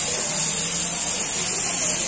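Marinated meat slices sizzling steadily on a hot, butter-greased ridged grill plate, with a constant hiss.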